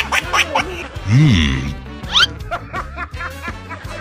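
Background music overlaid with snickering laughter and comedy sound effects: a low honk that rises and falls in pitch about a second in, then quick rising whistles.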